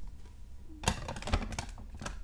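Hard plastic SGC graded-card slabs clacking against each other as one is set down on a stack: a quick run of sharp clicks about a second in.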